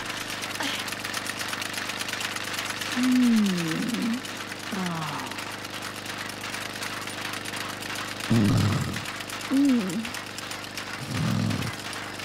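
A woman's wordless moans and groans, several times, her voice sliding down in pitch and back up, with two louder, lower groans in the second half. They come from someone lying in bed, dosed on painkillers.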